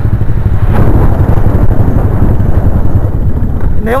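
Small motorcycle running flat out at close to 120 km/h, its engine under a loud, steady rush of wind buffeting the microphone.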